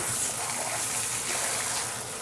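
Water spraying steadily from a shampoo-bowl sprayer hose over hair and into the basin: an even, hissing rush.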